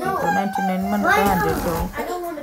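Voices talking, among them a child's voice.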